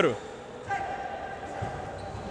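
Faint sounds of a futsal game on an indoor court: the ball being dribbled and touched on the hard floor, with distant players' voices in the hall. A commentator's word ends right at the start.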